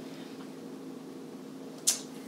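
Quiet room tone with a steady low hum, and a short breathy hiss near the end.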